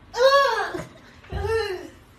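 Two short, high-pitched vocal calls about a second apart, each rising and then falling in pitch.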